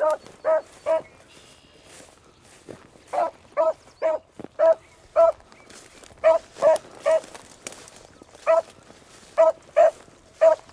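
A beagle baying on a rabbit's scent trail: short, clear barks of one steady pitch, about two a second, coming in runs broken by short pauses, the longest of about two seconds soon after the start.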